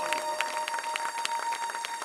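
A steady electronic drone held on one note, joined by a second, lower note, under scattered hand claps from the audience.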